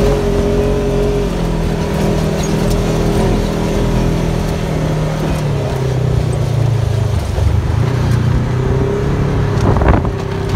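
Side-by-side UTV engine running under load while driving, its pitch dropping and climbing as the revs change, over steady wind and road noise. A sharp knock comes near the end.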